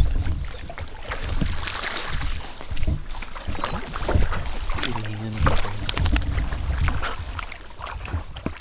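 Dogs splashing as they wade and swim through shallow creek water: irregular splashes of varying strength.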